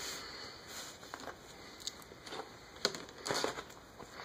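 Plastic parts of a transforming toy figure being handled, with faint rubbing and a few small clicks as pieces are pressed and snapped into place, most of them in the second half.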